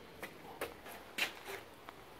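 A few faint, sparse clicks and taps from a metal ring spanner and the oil sump drain plug being handled, the loudest just over a second in.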